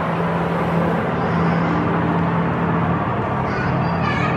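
Steady low hum over an even hiss of indoor background noise, with no clear single event.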